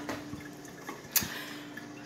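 Drip coffee maker brewing: a steady low hum with faint ticking and dripping, and one sharp click about a second in.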